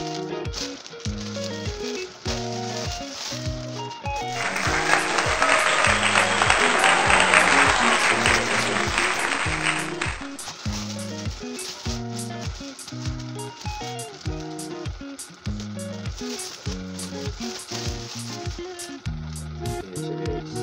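Background music with a steady beat. From about four seconds in, for about six seconds, plastic packaging is crinkled loudly over it as a pair of shoes is unwrapped from clear plastic wrap.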